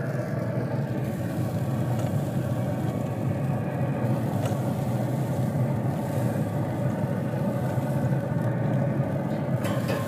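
Steady whirring hum of a Traeger pellet grill's fan and fire running at high heat, heard through the open lid.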